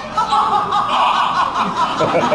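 Live theatre audience laughing.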